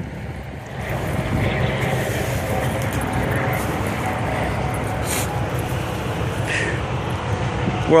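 Steady vehicle rumble with a faint low hum, starting about a second in, with a couple of brief rustles in dry grass near the middle.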